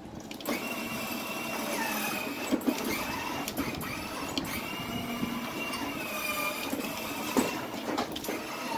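A small electric motor whirring steadily with a wavering high whine. It starts about half a second in and stops near the end, with a few light knocks along the way.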